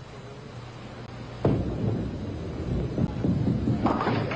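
Bowling ball released onto a wooden lane: a sudden thud about a second and a half in, then a low rumble as the ball rolls toward the pins.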